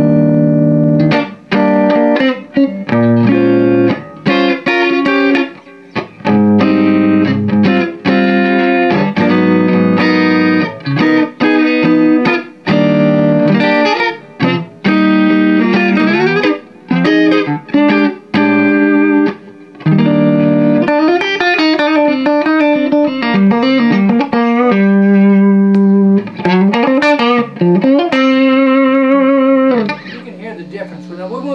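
Electric guitar played through a Gemtone ON-X8 8-watt EL84 tube amp, set with its preamp shift for lower gain and a focused, jazz-style tone. Chords and single-note lines, with string bends in the second half and a held note with vibrato near the end.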